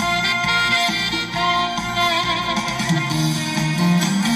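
Instrumental backing track playing through stage loudspeakers, a melody line over a moving bass line, with no vocals.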